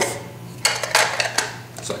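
Red hard plastic case of an MSR PocketRocket stove being handled, its halves pulled apart and pressed back together, making several sharp plastic clicks and knocks.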